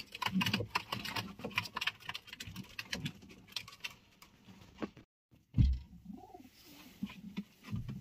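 Racing pigeons cooing softly in a nest box, with many light clicks and scratches as the birds move about on the cardboard floor and feed bowl. A brief dropout a little past halfway is followed by a loud thump.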